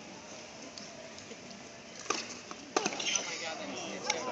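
Low crowd murmur with nearby spectator chatter. A few sharp pops come about two seconds in and again near three seconds: a tennis ball struck by rackets during a rally.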